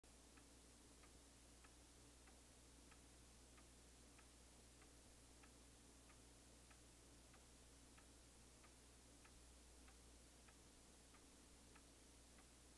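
Faint clock ticking steadily, about three ticks every two seconds, over a low hum and hiss.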